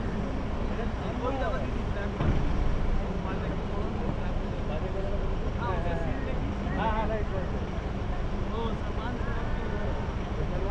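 Indistinct voices of people talking off and on over a steady low rumble, with a louder patch of rumble about two seconds in.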